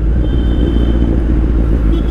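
Kawasaki Z900's inline-four engine running steadily as the motorcycle rides along, a dense low rumble.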